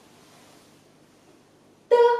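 Quiet room tone, then near the end a woman's voice starts a syllable held at one high, level pitch: a first-tone "dē" spoken slowly as a pinyin pronunciation drill.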